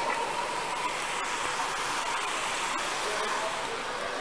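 Steady hiss of rustling and wind on a body-worn camera microphone as the wearer walks, with a faint steady tone fading out about a second in.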